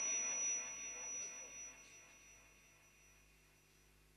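The reverberant tail of a melodic Quran recitation (tajwid) dying away through a loudspeaker system over about two seconds, leaving faint room noise.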